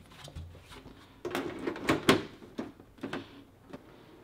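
Sheet-metal side panel of a desktop PC case being fitted and slid shut: a quick cluster of knocks and rattles about a second and a half in, then a few lighter clicks.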